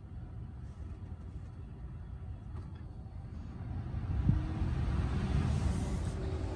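Tesla Model Y's cabin climate blower fan being turned up: a steady rush of air that grows louder about four seconds in, with a faint whine rising in pitch as the fan speeds up and a soft thump at the same moment.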